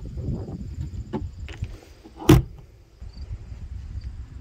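A travel trailer's rear storage door shut with a single loud thud a little past halfway through, after a few faint clicks of the door being handled, over a low rumble on the microphone.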